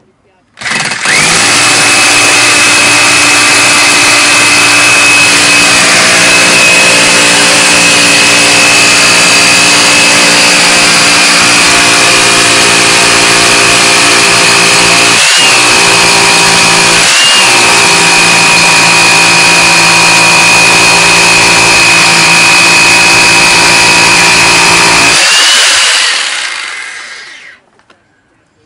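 Bosch GBH 4-32 DFR 900 W rotary hammer hammer-drilling into a concrete block, running loud and steady with a high whine for about 25 seconds. It dips briefly twice a little past halfway, then winds down.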